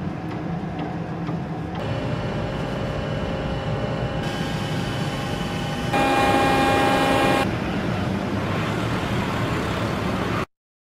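Steady engine and machinery noise from a ship and boats, with a drone of several steady tones. The sound changes abruptly several times, loudest and most tonal for about a second and a half just past the middle.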